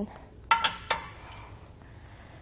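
Metal pin clinking twice against the steel mast bracket of a Swagman Quad 2+2 hitch bike rack as it is worked back into its hole, the two clinks under half a second apart.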